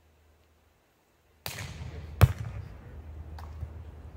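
A volleyball being hit: one sharp smack about two seconds in, and a fainter tap near the end, over a low rumbling outdoor noise that starts suddenly after a near-silent first second and a half.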